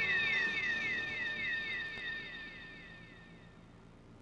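Synthesized magic sound effect: a bright, shimmering tone with a falling sweep that repeats about four times a second, fading away gradually and gone near the end.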